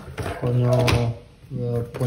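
A man speaking, with a few light knocks and clicks near the start as plastic bottles are handled in a cardboard box.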